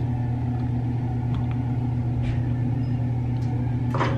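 Steady low background hum, with a couple of faint soft clicks.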